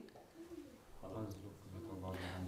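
A faint, low murmured voice, with a short sound about half a second in and a longer drawn-out hum from about a second in.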